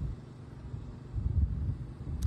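Gusty wind buffeting the microphone: an uneven low rumble that swells about a second in.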